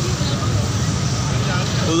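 Steady street traffic of passing motor scooters, a continuous low engine rumble, with crowd voices faintly mixed in.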